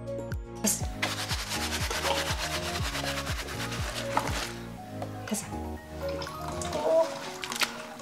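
Rubber-gloved hands mixing and rubbing cut napa cabbage with red pepper seasoning in a plastic basin, a steady wet rustling rub that starts about half a second in. Background music with a beat plays under it and stops near the end.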